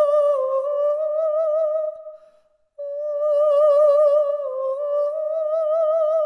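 A single voice humming long, high held notes with a wide vibrato, in two phrases with a short break about two and a half seconds in. Each phrase dips slightly in pitch and then climbs a little.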